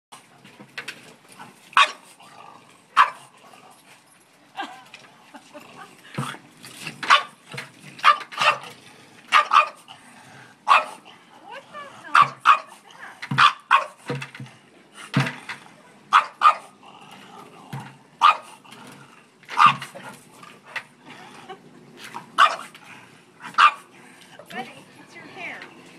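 French bulldog barking in short, sharp barks, roughly one a second at uneven intervals, aggressively at a bucket it is trying to attack.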